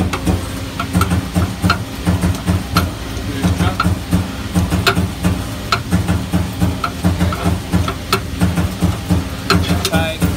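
A turret-punch die grinder running, with a low hum that pulses about three times a second and scattered sharp ticks over it.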